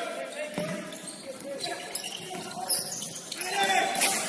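Futsal being played on a wooden indoor court: several sharp kicks of the ball, shoes squeaking on the floor, and players calling out, all echoing in the large hall.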